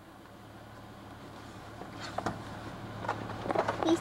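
A baboon moving about on a car's trunk lid, heard from inside the car: a few light knocks and taps in the second half, over a steady low hum.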